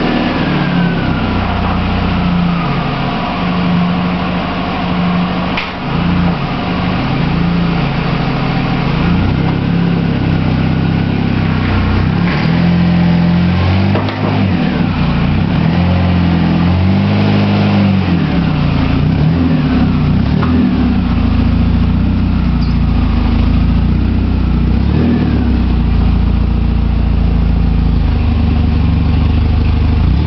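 A Chevrolet Corsica's 2.2-litre four-cylinder engine running under load as it tows a dead Chevy S10 pickup, its engine note rising and falling as the throttle is worked.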